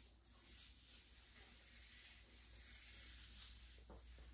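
Near silence, with faint soft rustling that swells now and then as gloved hands smooth protein-treatment-coated hair down the strands.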